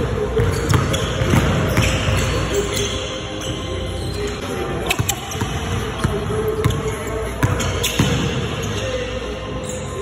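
Basketball being dribbled hard on a hardwood gym floor, bouncing at an uneven rhythm through crossover-style moves, with music playing underneath.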